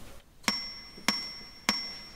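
Metronome count-in: three sharp, evenly spaced clicks about 0.6 s apart, a steady beat of roughly 100 per minute, setting the tempo before the guitar part begins.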